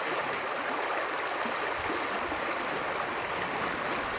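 Shallow river flowing over rocks: a steady rush of running water.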